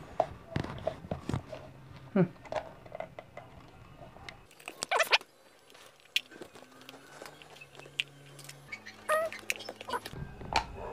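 Scattered plastic clicks and knocks from a Nerf Flyte CS-10 blaster's shell being handled and pried at while a stuck part is worked open. The second half is quieter.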